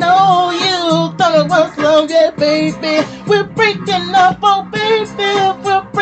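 A song: a high, wordless sung vocal run with wavering pitch over guitar accompaniment and a held low note.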